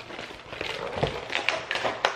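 Clear plastic air-cushion packaging rustling and crinkling as it is pulled off a plasma ball's glass globe, with a few short taps among the rustle.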